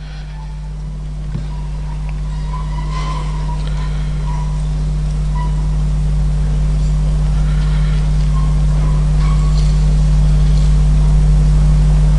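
Steady low electrical hum from the auditorium's sound system, growing gradually louder, with faint scattered murmurs in the room.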